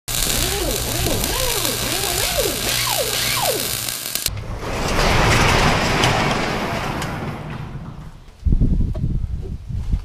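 Loud noise with swooping, sliding pitches for about four seconds, cut off suddenly. Then an overhead garage door rattles as it rolls up, swelling and fading over a few seconds, followed by a few heavy low thumps near the end.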